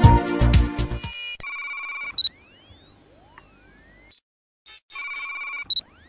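Intro music with a strong beat that cuts off about a second in. Electronic interface sound effects follow: a warbling, ringtone-like beep and rising pitch sweeps, a brief drop to silence with a few clicks, then the warbling beep and sweeps again.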